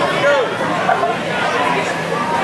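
Crowd chatter: many voices of onlookers talking over one another in a large indoor hall, with no single speaker standing out.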